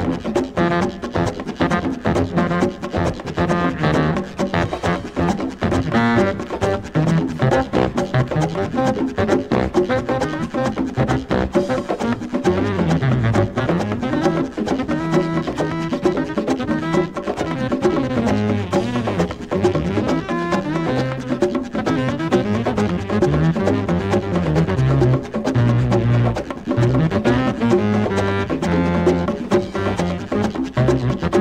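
Instrumental Latin jazz: dense hand percussion and a walking bass, with a saxophone playing over them.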